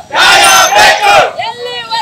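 A crowd of protesting farmers shouting a slogan in unison, loud, for about a second, then a single voice calling out the next line near the end.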